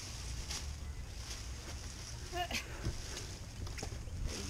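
Soft rustles and knocks of a black plastic trash bag being handled on a boat deck, over a low steady rumble, with a brief voice sound about two and a half seconds in.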